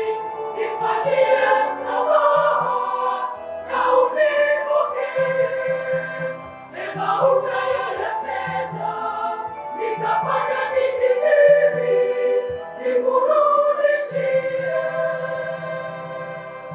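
A choir singing a slow song in several voices, with long held notes in phrases a few seconds apart, fading out near the end.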